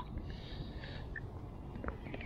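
A small roach being lifted from the water on an ultralight rod: a light splashing hiss in the first second, over a steady low rumble of wind and handling noise on the microphone.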